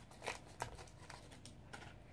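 Faint crinkling and a few light clicks as the plastic packaging of a lip gloss is opened.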